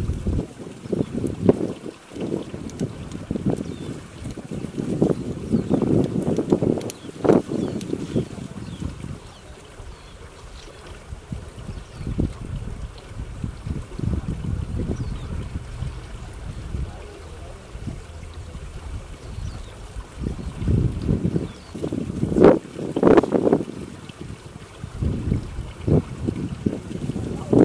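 Wind buffeting the microphone: a low rumble that comes and goes in gusts, loudest twice, once in the first third and again near the end.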